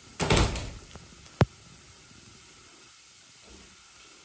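A door moving with a short rushing scrape, then one sharp click about a second and a half in as it shuts.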